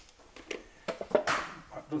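A few light knocks and handling sounds as a digital hygrometer is set down inside a wooden cigar humidor.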